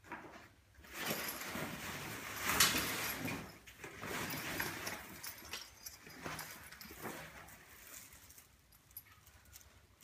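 Canvas annex wall rustling as it is handled and unfolded, loudest about two and a half seconds in, then dying away.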